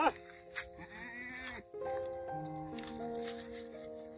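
A goat bleats with a wavering call about a second in, after a short bleat right at the start, over background music with long held notes.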